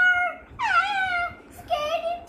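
A child's high-pitched, drawn-out vocal calls, about three in a row, sliding up and down in pitch.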